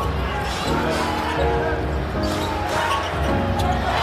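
Basketball game audio: a basketball being dribbled on the hardwood court over crowd noise, with steady held chords of music that change every second or so.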